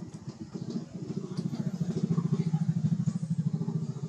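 An engine running with a rapid, even pulse, growing louder from about a second in.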